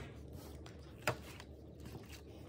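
A metal fork clicking once against a black plastic takeaway tray about a second in, otherwise quiet room tone.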